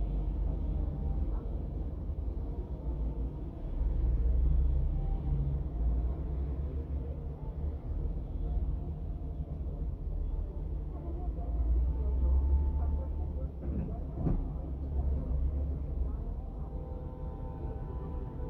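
Low, steady rumble of an idling engine that swells and eases a little, with a single sharp knock about fourteen seconds in.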